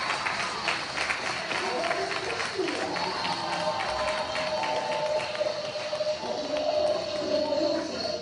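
A group of children singing together and clapping in rhythm, the singing holding long notes in the second half.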